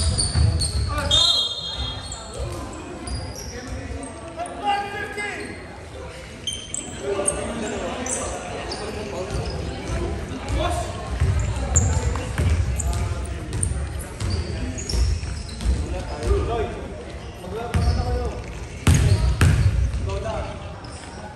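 Indoor basketball game: a basketball bouncing on a hardwood gym floor, with players' voices calling out, all echoing in the large hall. The sounds get louder near the end.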